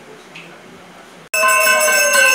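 Faint murmuring, then suddenly, a little past halfway, a loud puja bell ringing continuously during the aarti, many bright tones held together with a lower wavering tone beneath them.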